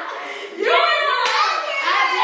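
Women laughing and shrieking with excitement, with hands clapping. The loud, high-pitched shrieking starts about half a second in.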